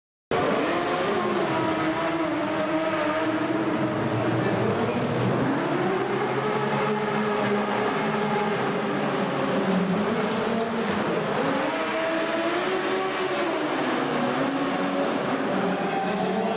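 Several racing sidecar outfits' engines at race revs, several pitches climbing and falling over one another as the machines accelerate and go through the turns.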